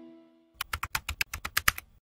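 The last held chord of background music fades out, then a quick run of about a dozen keyboard-typing clicks, roughly eight a second, starts about half a second in.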